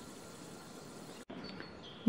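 Faint, steady outdoor background noise with no distinct event. It cuts out abruptly a little over a second in, where the recording is spliced, and resumes just as faint with a thin high tone.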